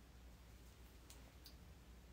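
Near silence: room tone with a low steady hum, and two faint short clicks about a second in, less than half a second apart.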